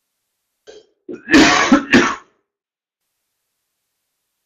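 A person clearing their throat: one short rasping burst of about a second, with three pushes.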